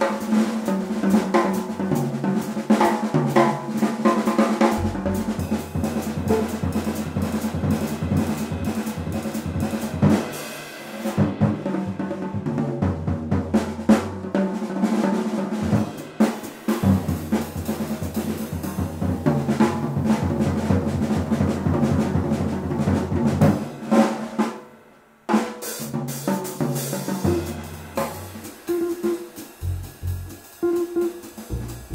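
Jazz drum kit solo played with sticks on snare, toms, bass drum and cymbals, with a brief pause about 25 seconds in.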